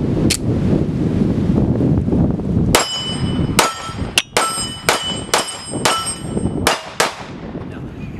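Dan Wesson ECO .45 ACP 1911 pistol fired in a quick string of about eight shots starting about three seconds in, with steel plate targets ringing after hits. Before the shooting, wind rumbles on the microphone.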